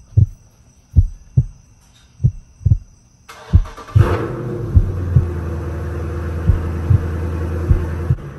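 Heartbeat-like double thumps, about one pair every second and a quarter. From about three seconds in, a car engine's steady low idle rumble with hiss runs under them.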